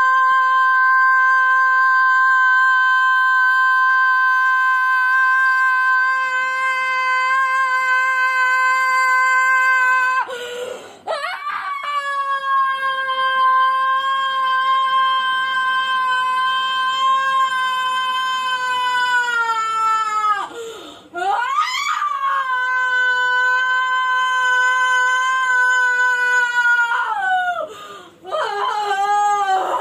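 A woman wailing in long, high-pitched held cries: three of them, the first about ten seconds long. Each sags down in pitch as it ends, with short broken gasping cries between them.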